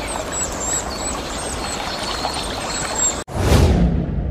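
Sound effect of rushing, pouring liquid for an animated logo reveal, a steady watery rush that cuts out abruptly a little past three seconds, followed by a short whoosh.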